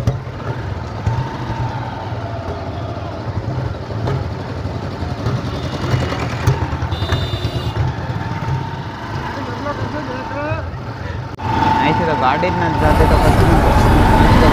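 A motor scooter running at low speed through a busy street market, with people's voices all around. A short high tone comes about seven seconds in, and the low rumble grows louder near the end.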